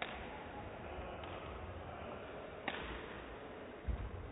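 Badminton rally: sharp cracks of rackets striking the shuttlecock at the start and just under three seconds in, with a fainter hit between, over steady hall noise. A heavy low thud of a player's foot landing on the court comes near the end.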